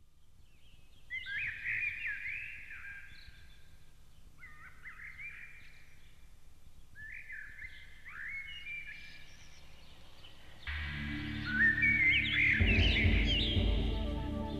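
Background music track that opens with birdsong: three short bursts of bird chirps, then a soft new-age instrumental with low steady notes comes in about eleven seconds in, with more chirping over it.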